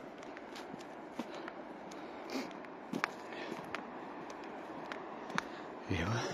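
Movement along a dirt and gravel path: a steady faint rushing noise with scattered irregular clicks and crunches.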